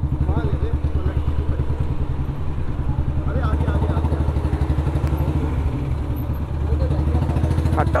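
Royal Enfield Bullet Standard 350's single-cylinder engine running at low revs, a steady rapid beat, as the bike rolls slowly and sits idling.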